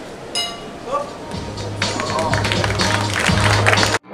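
A brief ring of the boxing bell just as the round clock runs out, over arena voices. From about a second and a half in, music with a steady bass line fades in and grows louder.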